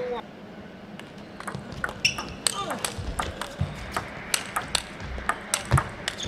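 Celluloid-free plastic table tennis ball bounced between points, a string of light, sharp clicks coming a few times a second in an echoing hall.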